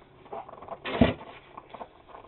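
Snow shovel scraping through snow, with one short, louder scrape and thud about a second in.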